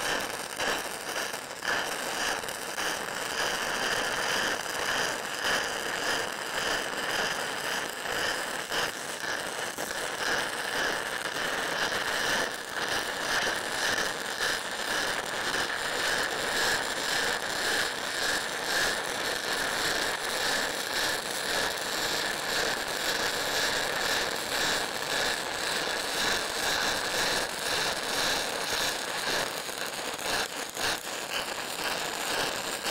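E6010 stick-welding (SMAW) arc crackling and spitting continuously as a root pass is run on an open-root steel butt joint. This is the aggressive arc of a 6010 rod, a dense, fast crackle that flutters slightly in loudness as the rod is whipped along the joint.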